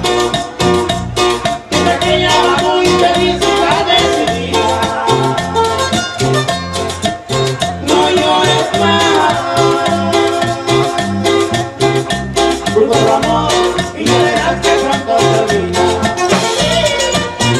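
Live Mexican música campirana played by a band for dancing, with a steady, evenly spaced beat.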